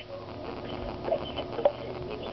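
Faint scattered sounds over an open phone line on speakerphone, with a single sharp click near the end.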